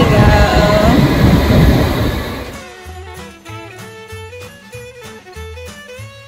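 London Underground train pulling into the platform: loud rumbling noise with whining, squealing tones. About two and a half seconds in this cuts off and gives way to quieter Christmas swing music with jingle bells.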